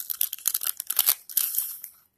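Paper rustling and crinkling as the pages of a handmade paper junk journal are turned: a quick run of small crackles that fades out near the end.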